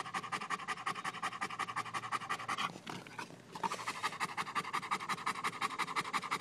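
A Rottweiler panting fast and hard with its tongue out, a quick even run of breaths with a short pause a little before halfway through; it is panting to cool off in 100-degree heat.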